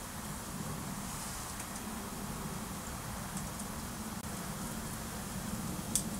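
Kettle heating up on its way to the boil: a steady hiss with a few faint crackles.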